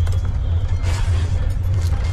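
Steady low rumble of a moving train, with brief rustling as a fabric bedding bag is pulled open and handled.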